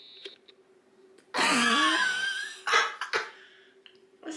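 A person's short loud vocal outburst about a second in, lasting just over a second, then a few short sharp catches of breath or sound.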